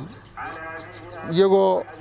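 One drawn-out bleat from a livestock animal, quieter than the speech around it, followed about a second in by a short word from a man.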